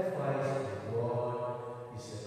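A priest's voice chanting liturgical text on a nearly steady pitch, echoing in a large church.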